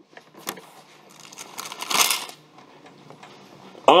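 Rustling of thin paper pages being turned, swelling to a peak about two seconds in, with a sharp click about half a second in.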